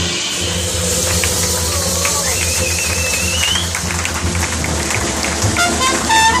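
Live jazz trio: drums with a wash of cymbals and double bass keep playing while the trumpet rests, and the trumpet comes back in near the end.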